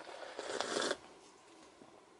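A noisy sip of a thick milkshake drunk from a stainless steel tumbler, lasting about a second.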